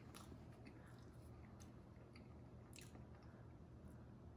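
Faint chewing of a mouthful of homemade pop-tart pastry, with a handful of soft crunches, the clearest about three seconds in.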